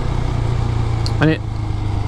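Husqvarna Svartpilen 401's single-cylinder engine running at a steady pitch while riding, with a steady hiss of road and air noise.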